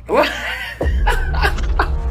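A man chuckling and laughing in short bursts, with a low rumble coming in underneath just before a second in.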